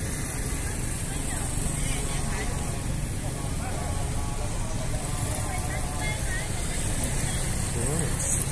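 Steady low drone of a passenger boat's engine heard on board, with faint voices in the background.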